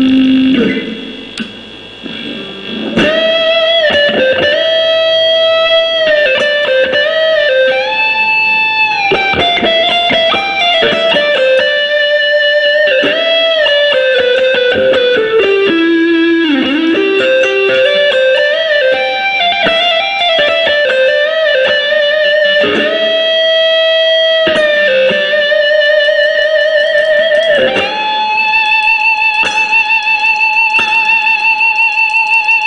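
Raksri LP-model electric guitar with humbucker pickups, played through a VOX Pathfinder 10 amp with overdrive: a single-note lead melody with long held notes, string bends and vibrato. It starts after a brief lull about two seconds in.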